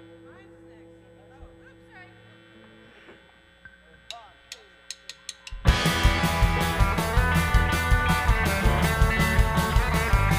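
Quiet held electric guitar notes and amplifier hum, then a quick run of sharp clicks. Just past halfway a psychedelic cow-punk rock band comes in loud: drum kit, bass guitar and electric guitar playing together with a steady beat.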